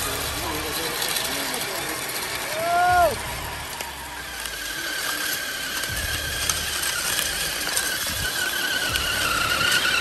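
Electric drivetrain of a radio-controlled truck whining steadily under load as it drags a weighted pull sled on a chain across dirt. A short rising-and-falling tone, the loudest moment, comes about three seconds in.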